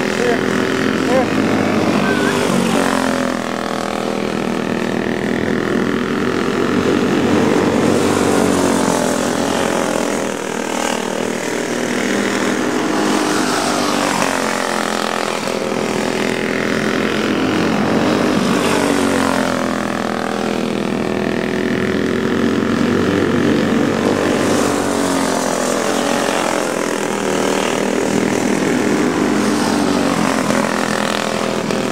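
Several dirt-track racing go-kart engines running hard, their pitch climbing and falling again and again as the karts accelerate down the straights and lift for the turns, with a new swell every five or six seconds as the pack comes round.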